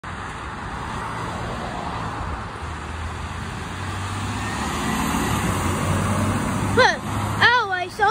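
Blue Bird school bus driving up and passing close by: a low engine drone and road noise build steadily louder as it approaches. A child's voice calls out twice near the end.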